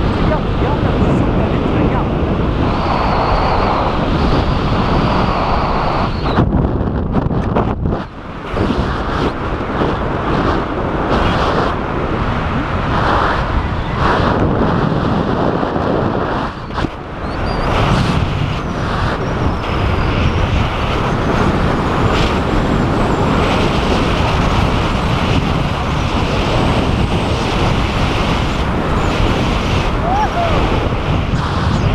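Strong wind rushing over the camera's microphone during a tandem parachute descent under canopy, loud and steady with brief lulls about eight and sixteen seconds in.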